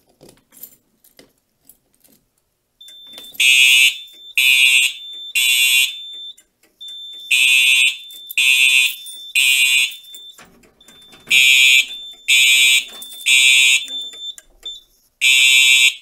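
Fire alarm horn strobes on a Simplex 4010 panel's notification circuits sounding in temporal code-3, three horn blasts then a pause, repeated, after a few faint clicks as the key test switch is turned. A thin steady high beep carries on between the blasts.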